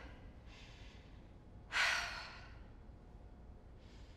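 A woman's sigh: a faint intake of breath, then a sharp breathy exhale just under two seconds in that trails off.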